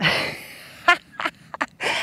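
A woman laughing: a loud breathy burst of laughter, then a few short laughs.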